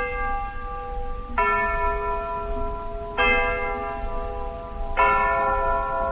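Bells struck four times, about one and a half to two seconds apart, each note ringing on until the next is struck.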